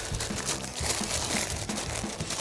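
Wax paper crinkling and rustling as it is rolled by hand around a log of soft butter on a wooden tabletop, in irregular small crackles.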